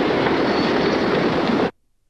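Loud, rough roar of a shell explosion and its rumble from wartime footage, holding steady and then cut off abruptly near the end.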